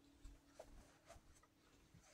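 Near silence: room tone with a few faint soft clicks, as of a phone being handled.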